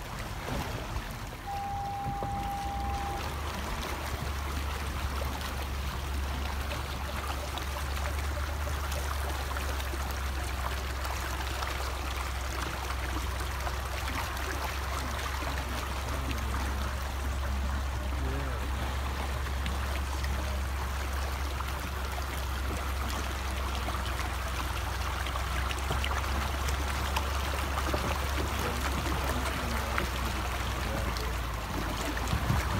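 Water rushing and splashing along the sides and wheels of a Range Rover as it wades slowly through deep water, a steady churning with a low rumble underneath. A steady single-pitch electronic beep sounds for about a second and a half near the start.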